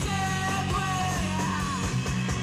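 Live punk rock band playing loud distorted electric guitars, bass and drums, with a held, yelled vocal note that bends in pitch near the end.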